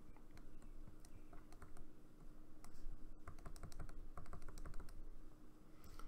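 Stylus writing on a tablet or pen display: faint, light clicks and taps, some in quick runs, as the pen tip strikes the surface.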